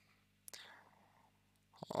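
A pause in a man's speech, filled by one short breath that starts sharply about halfway in and fades away, then small mouth clicks just before he speaks again.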